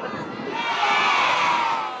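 A crowd of children shouting an answer together, a long mixed group shout of "yes" and "no" that swells and then fades.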